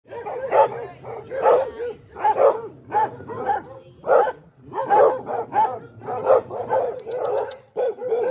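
Dogs barking over and over, about two barks a second.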